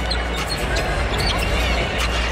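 Basketball being dribbled on a hardwood court, a few sharp bounces over steady arena crowd noise.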